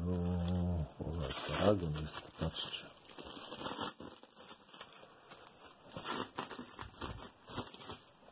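Clear plastic sleeve on a vinyl LP crinkling and rustling as the record is turned over and handled, in irregular crackles and light clicks.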